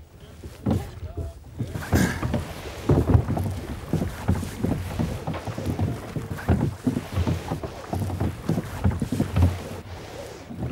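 A wooden rowboat being rowed: irregular knocks of the oars working in their rowlocks and splashes of the blades in the water, with wind on the microphone.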